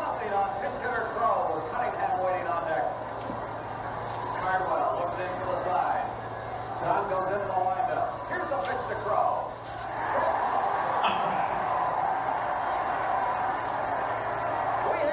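A man's voice singing lines of operatic dialogue, the words unclear, with a steadier held stretch in the last few seconds.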